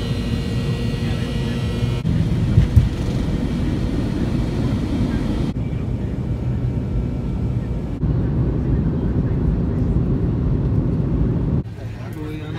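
Jet airliner cabin noise: engines and airflow running steadily, heard in several short clips joined by abrupt cuts, with a brief bump a little under a third of the way in.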